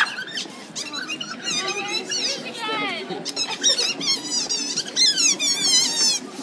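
Rapid, high-pitched squeaks and warbling whistles that slide up and down over and over, with voices chattering underneath.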